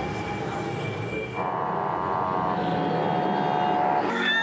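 Busy city street traffic: a steady rumble of vehicles. About a second and a half in, a sustained horn-like tone joins it and holds steady.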